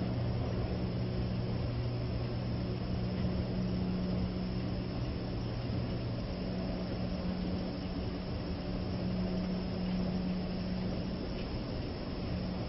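Steady low mechanical hum over an even rush of air noise, the machinery and ventilation of an empty underground railway station. One of the two hum tones drops away about halfway through.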